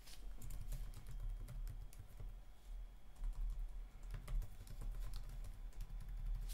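Typing on a computer keyboard: a run of quick, irregular key clicks, fairly faint.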